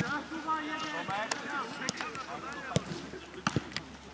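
Players shouting and calling on a football pitch, with several sharp thuds of a football being kicked; the loudest kicks come in the second half.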